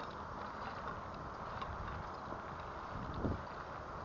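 Steady rolling road noise from an unsuspended electric bike riding over cracked asphalt, with one short thump about three seconds in.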